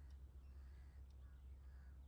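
Near silence: room tone with a steady low hum and a few faint, distant bird calls.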